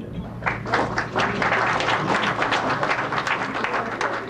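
Large audience applauding. The clapping swells in about half a second in and holds steady.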